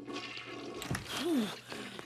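A toilet flushing, a rush of water, with a short vocal sound rising and falling in pitch partway through.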